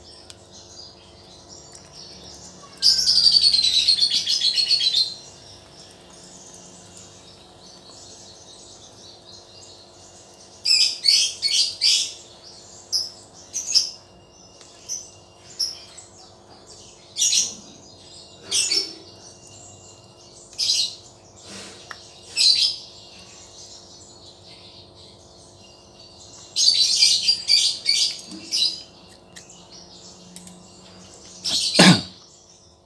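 A bird chirping and calling: a warbling run of song about three seconds in, a string of short chirps in the middle, and another warbling run near the end, over a faint steady hum.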